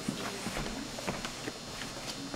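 A handful of irregular sharp knocks or clicks, about six in two seconds, over faint voices.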